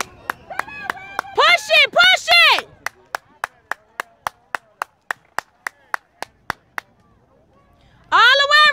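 Quick, evenly spaced hand claps, about three or four a second, that stop about two-thirds of the way through. Loud high-pitched cheering shouts ring out over the claps in the first few seconds.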